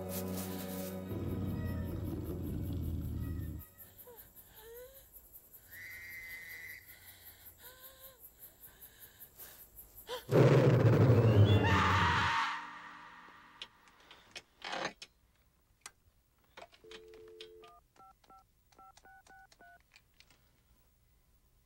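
Horror-film soundtrack: a music cue that fades out about three and a half seconds in, then faint eerie sounds and one loud sudden burst lasting about two seconds, roughly ten seconds in. Near the end, a few short electronic tones of a telephone ringing.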